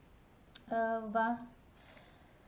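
A woman saying one short word, just after a single brief click.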